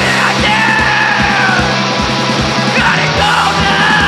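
Heavy rock band playing live: distorted electric guitars, bass and drums with a steady kick-drum beat of about three a second, with yelled vocals and pitched lines sliding down over the top.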